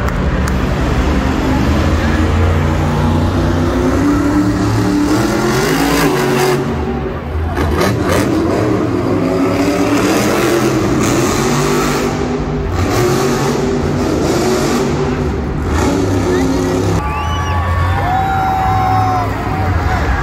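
Monster truck's supercharged V8 engine revving up and down over and over as the truck drives on the arena's dirt floor.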